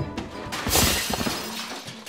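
A crash of breaking glass about half a second in, fading over about a second, with music playing underneath.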